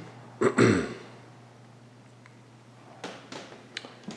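A man clears his throat once, briefly, about half a second in. A few faint clicks follow near the end.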